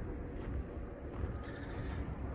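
Steady low rumble of outdoor background noise on a phone microphone, with no distinct events.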